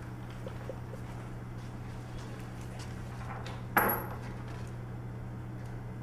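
A single sharp clink of crockery about four seconds in, with a brief high ring. It sits over a steady low electrical hum.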